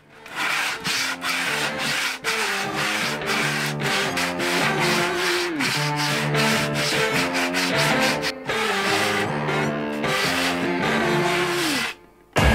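Hand sanding along the edge of a plywood panel with a sanding block, in quick back-and-forth strokes about three a second. Background music with a repeating melody plays over it.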